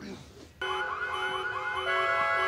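An electronic alarm starts about half a second in, sounding fast repeated rising whoops, about five a second, over steady held tones.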